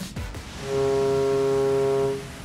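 A ship's horn sounds one steady blast lasting about a second and a half, starting just over half a second in, over background music.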